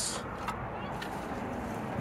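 Type 2 EV charging connector being lifted out of its plastic wall holster: a brief scrape right at the start and a small click about half a second in, then steady low background noise.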